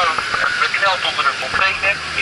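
Voices talking inside the cab of a fire engine under way, with the truck's engine as a steady low drone beneath, clearer in the second half.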